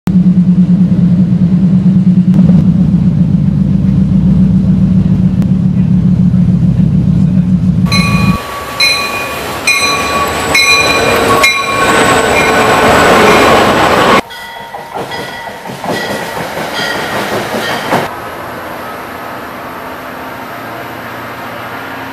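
Passenger train passing close by: a loud, low, steady drone for about the first eight seconds, then the coaches rolling past with high-pitched tones coming and going. The sound drops off about fourteen seconds in and settles to a steady, quieter rumble.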